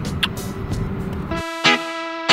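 Outdoor background noise picked up by a phone microphone, with one short click, then edited-in background music with plucked guitar-like notes starts abruptly about one and a half seconds in.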